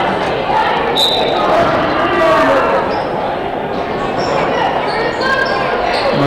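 Basketball being dribbled on a hardwood gym floor, with voices from players and the crowd and a few short, high squeaks.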